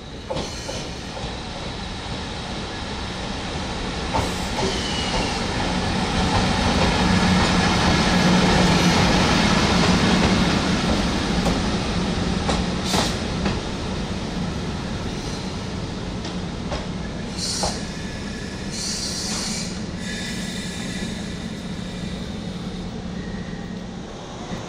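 An EF64 electric locomotive hauling a Mani 50 van passes through a station, a steady low hum under a running rumble of wheels on rails. It grows louder to a peak in the middle, as the locomotive and van go by, then eases off, with a few sharp clicks from the wheels.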